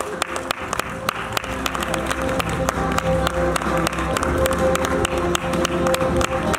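Background music with a long held note, over audience applause: many hands clapping irregularly.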